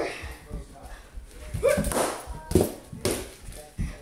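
Children play-fighting: a handful of sharp whacks and thumps, irregularly spaced and mostly in the second half, mixed with short shouts and voice sounds.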